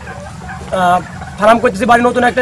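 Domestic poultry calling in a flock of turkeys: a short pitched call just under a second in, followed by further calls.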